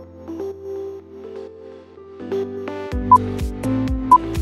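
Electronic background music: a soft synth melody that fills out, then a drum beat with kick and hi-hat kicking in about three seconds in. A short high beep sounds with the beat's arrival, one of a once-a-second series of countdown beeps.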